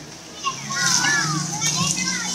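High, gliding shouts and whoops from people in shallow sea water. From about the middle on they sound over a steady hiss of splashing water and surf.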